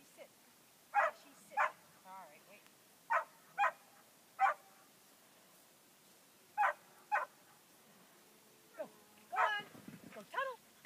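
A dog barking in short, sharp barks, mostly in pairs about half a second apart, with gaps of a second or two between them.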